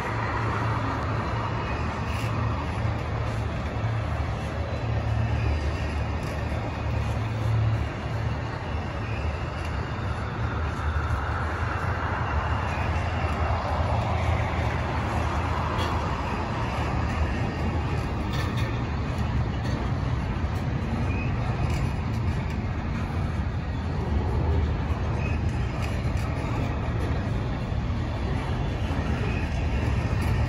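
Intermodal freight train's stack cars and trailer flatcars rolling past: a steady low rumble of steel wheels on rail with faint scattered clicks.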